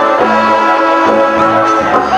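Brass band music playing loudly, with horns holding the tune over a low bass line that steps from note to note.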